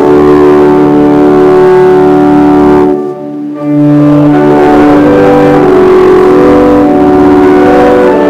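Organ playing a hymn in held, sustained chords, with a brief break between phrases about three seconds in.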